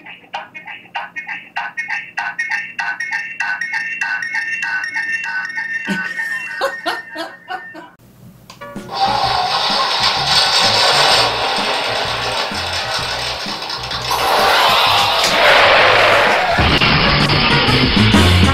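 A thin, repeating electronic tune from the WiFi security camera's small speaker, looping with an even tick. About eight seconds in it cuts off and louder background music takes over.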